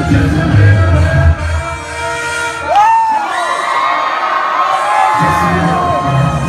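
Live hip-hop concert music played loud through a venue PA, with the crowd cheering and whooping. The bass beat drops out about a second in, leaving a voice singing a gliding line over crowd noise, and the beat comes back in near the end.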